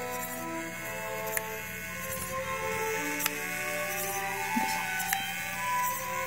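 Small electric motor in a butterfly pin toy flapping its wings, with a sharp click about every two seconds. Soft background music of held notes runs underneath.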